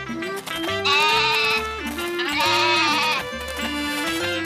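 A goat bleating twice, each bleat about a second long with a wavering pitch, over background music.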